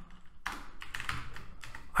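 Computer keyboard typing: a quick run of keystrokes as a short line of code is entered.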